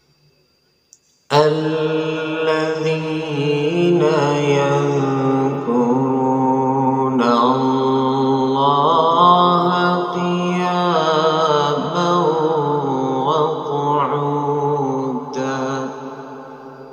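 A solo male voice reciting the Quran in melodic tajwid style in maqam Bayati: after about a second of silence, long held, melismatic phrases with ornamented, wavering pitch.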